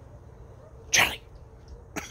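A short, loud sneeze about a second in, followed by a briefer, quieter one at the very end.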